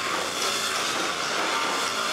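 Live rock band playing at full volume, heard as a dense, noisy wash of distorted guitars and cymbals with no clear beat.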